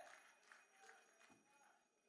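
Near silence: faint voices fading out, with a few faint clicks.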